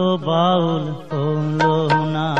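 Male voice singing a Baul folk song, holding a long wavering note with a brief break in the middle, over instrumental accompaniment. Two sharp percussion strikes come near the end.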